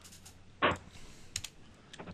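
Computer keyboard typing: a few scattered keystrokes, with one louder short knock just over half a second in.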